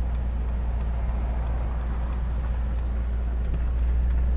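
Cabin sound of a Mercedes-AMG E63 S: its twin-turbo V8 running low and steady as a deep hum, with the turn-signal indicator ticking evenly about three times a second.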